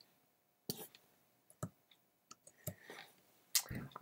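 A handful of short, isolated clicks, roughly a second apart, from computer keys and mouse being used to run a line of code.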